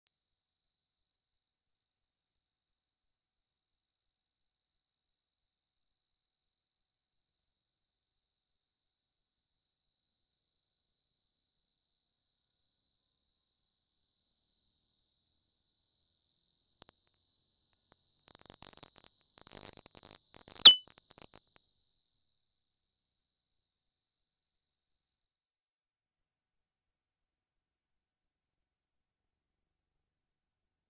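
Knock-sensor audio from a Plex knock monitor on a supercharged C7 Corvette V8 during a full-throttle dyno pull: a narrow, high-pitched hiss that grows louder as the pull builds. About 20 seconds in comes a single sharp click, a real knock event picked up by the sensor. Near the end the hiss jumps higher in pitch.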